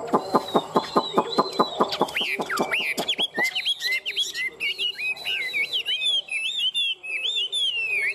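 Caged Chinese hwamei (họa mi) singing in contest style. It opens with a rapid run of falling notes, about six a second, for the first three seconds or so, then breaks into varied high, curling whistled phrases.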